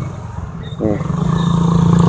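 Motorcycle engine running in slow street traffic, a steady low hum that grows louder about a second in as it pulls forward.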